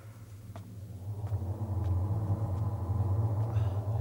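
A low, steady rumbling drone, swelling up about a second in, with faint steady higher tones above it: an atmospheric sound effect on a drama soundtrack.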